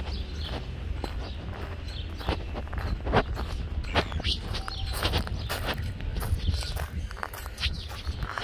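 Footsteps crunching on a gravel path at a walking pace, irregular short crunches over a steady low rumble.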